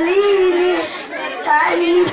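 A young girl singing a patriotic folk song into a handheld microphone, holding one long note, then easing off briefly before the next phrase starts near the end.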